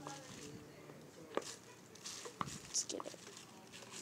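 Silicone pop-it fidget toy being pressed with the fingertips, giving a few short, sharp pops about a second apart, the loudest about two and a half seconds in.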